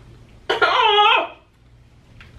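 A woman's high-pitched, wordless cry of strain, just under a second long, starting about half a second in, its pitch dipping and rising again.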